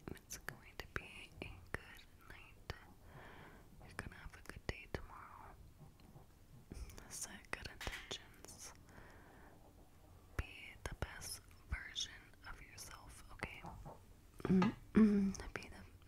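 Close-miked ASMR whispering: a woman's breathy whispers with many short soft clicks scattered through them, then a few words spoken aloud near the end.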